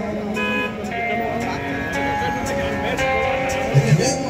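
Live rock band music with guitar, heard amid crowd chatter, with a brief low thud near the end.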